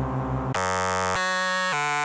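Surge software synthesizer playing preset demos. A pulsing, wobbling monosynth patch ('Labcoat') switches about half a second in to a bright, buzzy patch ('Log Log'). The new patch plays held notes that step to a new pitch roughly every half second.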